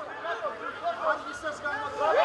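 Faint voices of players and spectators at a football match, well below the level of the commentary.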